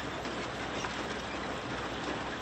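Sugar beet harvester running while its elevator drops beets into a trailer: a steady machine noise with a dense clatter of roots landing on the heap.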